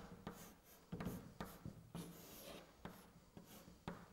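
Chalk writing on a blackboard: a faint, irregular string of short scratches and taps as letters are written.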